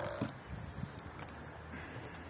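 A short, loud grunt of effort right at the start, as a hand-launched glider is thrown, followed by a sharp knock and a few faint ticks.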